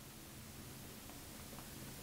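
Quiet room tone: faint hiss with a steady low hum, and a couple of barely audible soft ticks.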